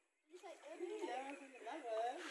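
Faint voices of several people talking in the background, after the sound cuts out completely for about a third of a second at the start.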